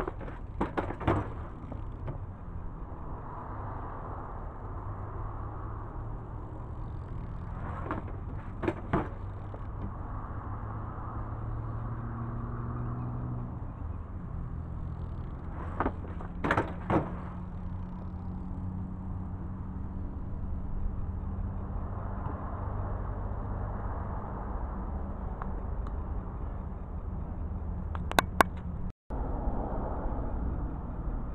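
BMX bike riding a concrete skate park ramp: tyre roll swelling and fading as it passes, with four short clatters of sharp knocks as the bike hits the concrete, roughly every eight seconds, over a steady low hum.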